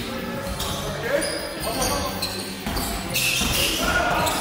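A basketball bouncing on a hardwood gym floor during play, a few sharp thuds that echo in the hall, with players' voices around it.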